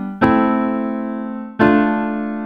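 Software piano instrument played from a MIDI keyboard: two chords struck about a second and a half apart, each ringing on and slowly dying away, with the chord before still sounding at the start.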